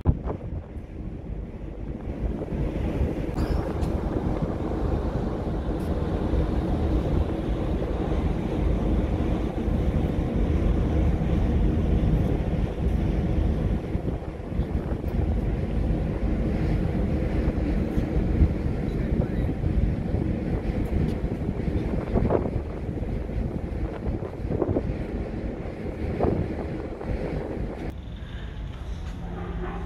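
Wind buffeting the microphone on a ferry's open deck, over the low rumble of the ship under way. The noise is steady and heavy in the bass, swelling about two seconds in and easing near the end.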